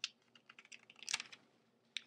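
Glossy magazine pages being handled and turned by hand: a run of crisp paper crackles and ticks, loudest about a second in.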